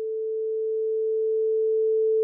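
A pure sine-wave beep from a Pure Data sine oscillator running on an Electrosmith patch.Init() Eurorack module. It holds one steady mid-range pitch and grows slowly louder while the output gain is turned up. This is the module's first test patch working.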